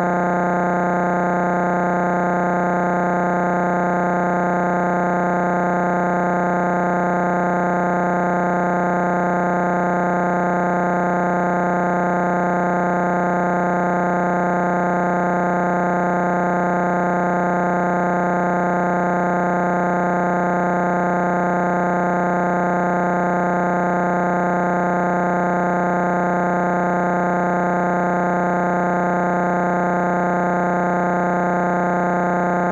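A continuous, unchanging electronic buzz: one low pitch with many overtones, held at a steady level throughout. It is typical of a corrupted or stuck audio track rather than any real-world source.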